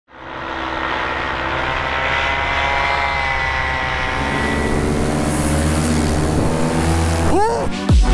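Paramotor engine and propeller running steadily, a constant multi-toned drone. Near the end, rising electronic sweeps lead into music.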